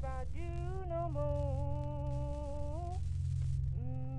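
A wordless hummed voice holds one long note that bends gently in pitch, then starts a shorter note near the end. A steady low drone runs underneath.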